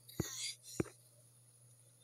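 Two short clicks about half a second apart, the second louder, with a soft breathy whisper around the first.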